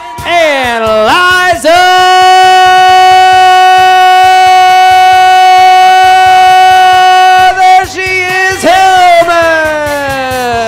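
An amplified voice over a hall PA, sliding down in pitch, then rising into one long, steady sung note held for about six seconds, and swooping up and falling away again near the end.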